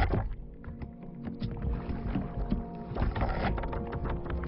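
Film soundtrack: tense music under underwater sound effects of a small submersible in a giant squid's grip. A heavy hit comes at the very start, followed by repeated creaks and clicks over a low rumble.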